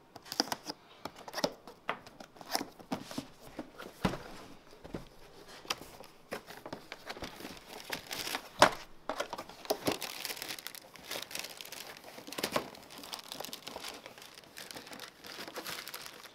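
A knife slitting the sealing tape on a cardboard box, then the box's cardboard flaps and lid being pulled open and handled: irregular crinkling, tearing and scraping with many short sharp clicks, the loudest a little after eight seconds in.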